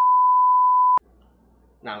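Television colour-bar test tone: a single loud, steady, pure beep lasting about a second that cuts off abruptly.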